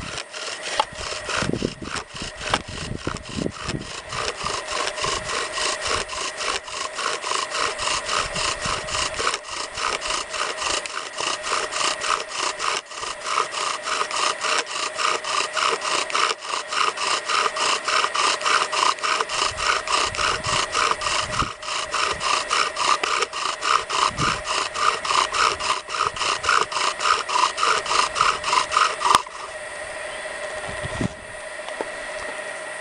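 Bow drill being worked: a willow spindle spun by the bow's cord, grinding against its willow hearth board in a quick, even back-and-forth rhythm that grows louder and stops abruptly about a second before the end. This is the burn-in, wearing a charred seat for the spindle into the board.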